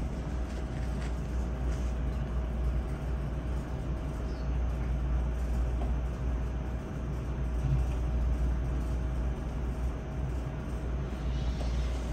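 Steady low rumble of meeting-room background noise, with a faint steady tone above it and no speech.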